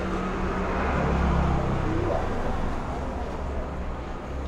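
Low rumble of road traffic, swelling as a vehicle goes by and easing off toward the end.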